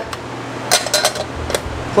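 Metal cover door of a 30 A 240 V quick-disconnect box being swung shut, a quick cluster of sharp metallic clicks and clatter under a second in, then one more click shortly after.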